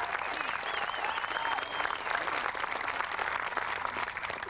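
Crowd of people applauding steadily, with a few faint calls over the clapping.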